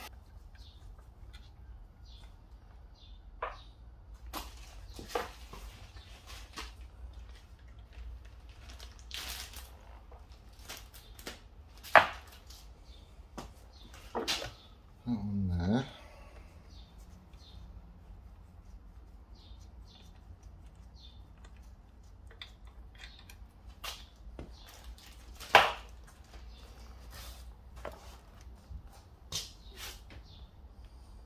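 Socket and ratchet working bolts out of a motorcycle engine's lower crankcase: scattered light metallic clicks and taps, with two sharper clacks, one about halfway through and one near the end.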